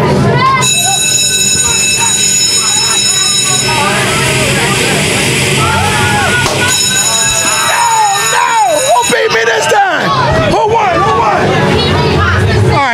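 Carnival water-gun race game in play: a steady high-pitched electronic tone with several overtones sounds for about eight seconds, thinning out in the middle, over the hiss of the water jets, and stops about nine seconds in.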